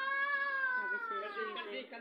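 A cat's long meow, rising in pitch at first and then slowly falling, breaking into shorter choppy cries near the end.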